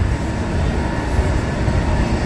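Steady low hum and rumble of an underground train platform, with a train standing at the platform, doors open, waiting to depart. A few faint steady tones run through the noise.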